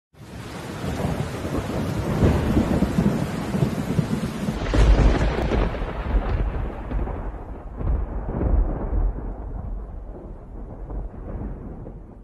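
Thunderstorm sound effect: steady rain hiss under rumbling thunder, with the loudest thunder crack about five seconds in. The thunder then rolls away, growing duller toward the end.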